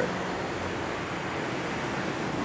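Steady indoor room noise: an even hiss with a faint low hum and no distinct events.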